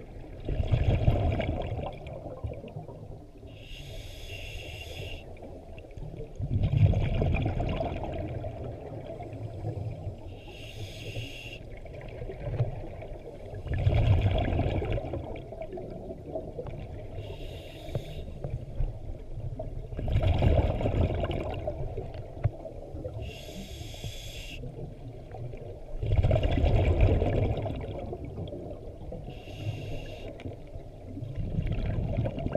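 Scuba diver breathing through a regulator underwater, in a slow even rhythm of about one breath every six to seven seconds. Each breath is a short hiss as the regulator delivers air, then a louder burble of exhaled bubbles venting from the exhaust.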